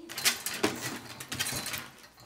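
Rapid, uneven clicking and scuffling as a small Schipperke struggles against a nail trim on the grooming table.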